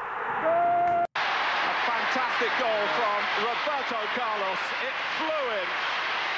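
Televised football match audio: a held, steady voice note that cuts off abruptly about a second in. After the cut come continuous stadium crowd noise and a commentator's voice.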